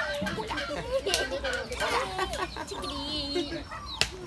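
Chickens clucking as a rooster is hand-fed, with voices mixed in.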